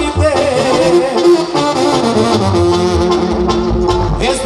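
Mexican banda brass band playing live: horns carry an instrumental passage of held notes over a low bass line.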